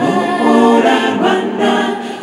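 Mixed choir of women's and men's voices singing a gospel song in Kinyarwanda, unaccompanied, in full harmony.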